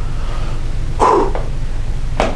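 One short, loud vocal burst from a person about a second in, such as a called-out word or a cough. A steady low room hum runs underneath.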